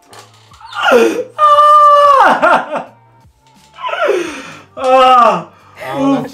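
A man's voice giving four loud, drawn-out wailing cries. Most slide down in pitch; the second is held on a high note for about a second before dropping.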